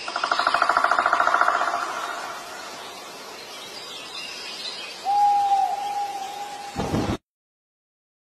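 A sudden rush of gas blasting out of a wall-mounted air-conditioner outdoor unit, throwing out a cloud of dust. It flutters with a rapid pulsing tone for about two seconds, then settles into a hiss that fades. A short high tone comes about five seconds in, and the sound cuts off suddenly near the end.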